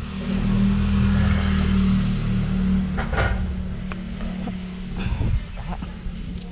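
Small motor-scooter engine running steadily, louder for the first three seconds and then easing off.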